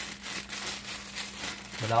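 Plastic zip-top bag crinkling and rustling in irregular bursts as hands squeeze and work the chicken gizzards and hearts inside it.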